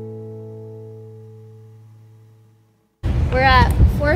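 Background acoustic guitar music ends on a last chord that rings out and fades to silence. About three seconds in, a woman's voice starts suddenly over a steady low noise.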